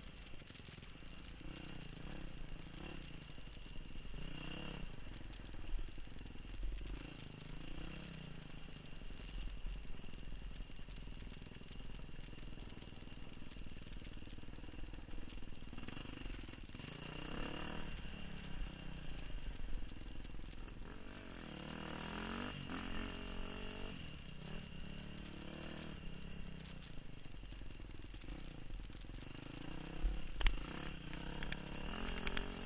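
Dirt bike engine heard from the rider's own machine, revving up and down with the throttle as it rides a rough trail. The pitch rises and falls repeatedly, with a longer climbing rev a little past two-thirds of the way through.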